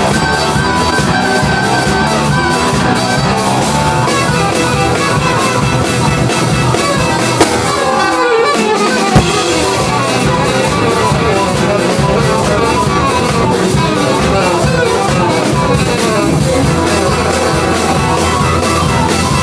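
Live jazz octet playing: a saxophone and trumpet horn section over drum kit, double bass, electric guitar and keyboards, with a steady drum beat. About eight seconds in the bass and drums break off briefly, and the band comes back in on a sharp hit.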